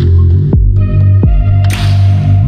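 Background music: an electronic track with a deep, pulsing bass, held synth notes and quick falling bass sweeps.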